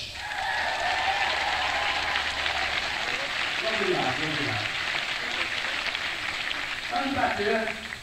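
Theatre audience applauding and cheering, heard on an amateur audience tape, with a man's voice cutting through the clapping about four seconds in and again near the end.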